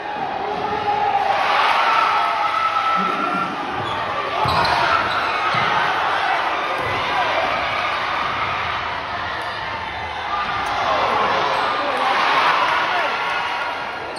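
A basketball bouncing on a court during live play, the dribbles heard as scattered low thuds under a steady wash of crowd chatter and voices in the gym.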